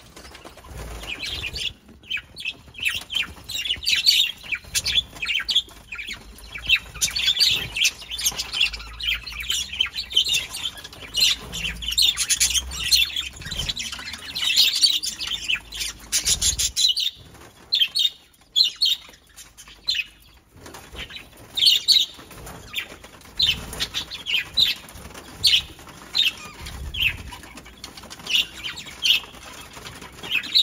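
Flock of budgerigars chattering and chirping, a busy run of short, high calls.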